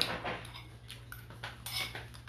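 Metal spoon clinking and scraping against a plate while scooping rice and fish. One sharp clink at the start is the loudest, followed by several lighter clicks and scrapes.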